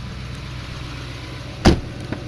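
A 6.6-litre LBZ Duramax V8 diesel idling steadily, heard from the truck's cab. Near the end there is a single loud thump of a truck door.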